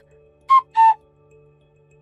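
Two short, loud whistle-like tones in quick succession, the second a little lower than the first: a scene-transition sound effect, over faint steady background music.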